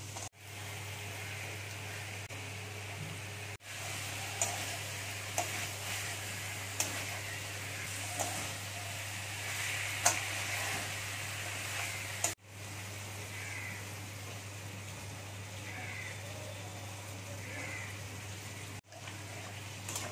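Pointed gourd and spice paste sizzling and frying in a metal kadai, with a metal spatula scraping and knocking against the pan as it is stirred, giving a scatter of sharp clicks. The sound breaks off briefly three times.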